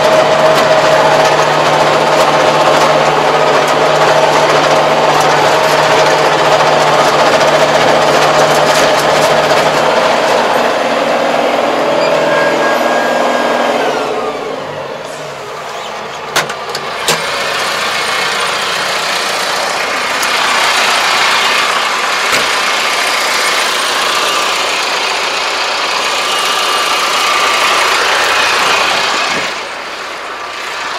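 MZ775 tractor engine running steadily under load while a rotary tiller works the soil, heard from the cab. About halfway through the sound dips, a few sharp clicks come, and the engine carries on with a noisier, hissier tone.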